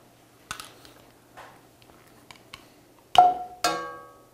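A utensil knocking twice against a cast iron skillet, about half a second apart near the end, each knock ringing briefly as lumps of solid coconut oil are dropped into the pan. A few faint clicks come before.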